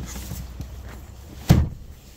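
A 2018 GMC Yukon Denali's door shutting with one heavy thud about one and a half seconds in, over a low rumble of handling noise.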